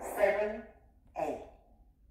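A woman's voice says two short words about a second apart, counting the dance steps aloud, over a faint low hum.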